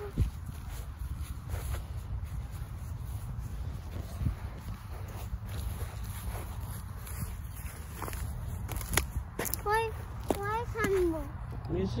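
Footsteps walking through grass over a steady low rumble, with scattered light clicks. A child's voice sounds briefly near the end.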